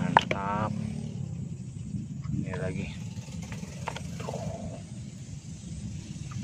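A few short wordless vocal sounds and light clicks of plastic toy figures being handled, over a steady low rumble.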